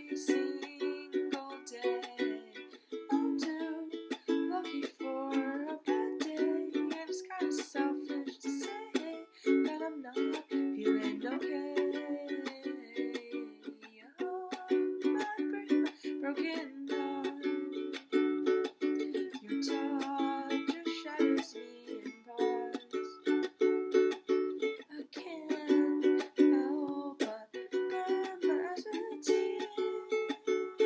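Ukulele strummed in chords while a woman sings.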